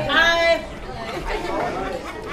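Chatter of several voices in a room, with one voice standing out in the first half second.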